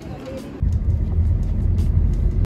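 Steady low rumble of a car's interior while it is being driven, cutting in suddenly about half a second in.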